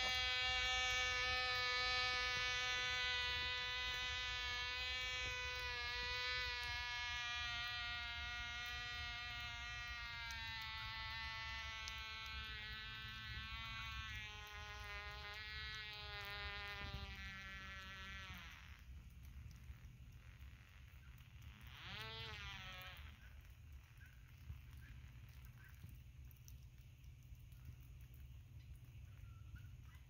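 Buzz of a 1/2A glow engine on a free-flight model plane running on at full power overhead, its pitch wavering slightly as it fades away over about eighteen seconds, then swelling briefly once more with a wobbling pitch before dying out. The engine keeps running because the fuel timer failed to pinch off the fuel line: the plane is flying away.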